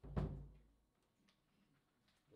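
A single low thump right at the start that rings for about half a second, then near silence.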